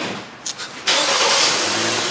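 A car engine starting about a second in, then running loudly and steadily.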